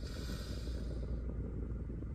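Steady low rumble of a car's idling engine heard from inside the cabin, with a soft breath fading out about a second in.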